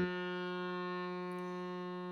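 Harmonium holding one steady sustained note, its reeds sounding evenly with no voice over it.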